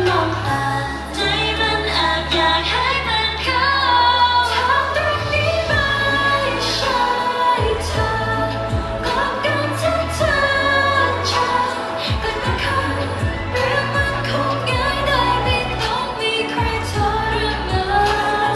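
Thai pop song performed live: a female voice singing into a microphone over a pop backing track with a deep bass line and drum hits.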